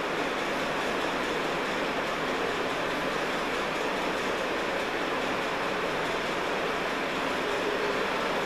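Steady, even rushing background noise that does not change, with no distinct events.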